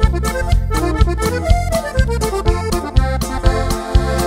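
Norteño-banda music in an instrumental break: an accordion plays a quick run of short notes over drums and a bass line with a steady beat.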